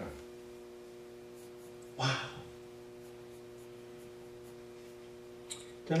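A quiet pause filled by a steady low hum, with a man saying "wow" once about two seconds in and a faint click near the end.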